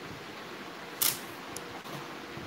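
Steady room hiss with one short, sharp click about a second in, followed by a fainter tick.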